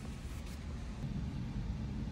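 Steady low rumble with a faint even hiss: indoor room noise with no distinct events.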